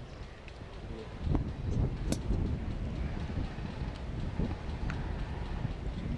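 Wind rumbling and buffeting on the microphone, with a few faint clicks.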